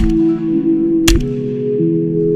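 Two shotgun shots about a second apart, the first right at the start, each a sharp crack with a short low boom after it. Background music with steady sustained notes plays under and around them.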